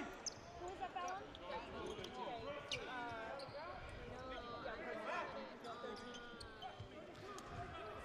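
Basketball arena ambience during a stoppage: a low hum of many crowd and player voices with a ball bouncing on the hardwood court. A brief high squeak comes about three seconds in.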